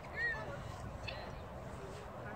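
A faint voice over a low, steady background noise, with a short call near the start.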